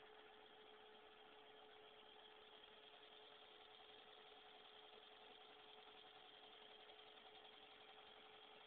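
Faint, steady hum of a homemade brushed motor built from hard drive parts, spinning continuously while powered through just one of its coils; a single held pitch over a low hiss.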